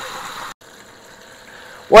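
Catfish fillets deep-frying in a Fry Daddy deep fryer, the hot oil bubbling and sizzling as a steady hiss. The sound drops off abruptly about half a second in, leaving a fainter hiss, and a man's voice starts at the very end.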